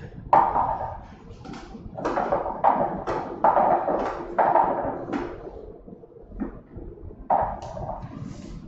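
Small numbered balls tumbling and knocking inside a clear plastic lottery drum as it is turned by hand: a string of sudden clattering knocks, a lull, then one more knock near the end.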